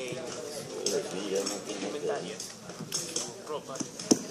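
Indistinct low murmur of several people talking away from the microphone, with a few light clinks and clicks.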